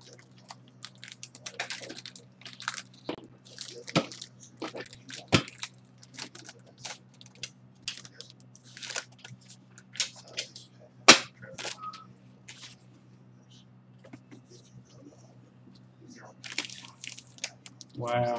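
Foil trading-card pack wrapper crinkling and crackling as it is handled and torn open, in a run of sharp crackles with one louder crack about eleven seconds in and a quieter stretch shortly after. A steady low electrical hum runs underneath.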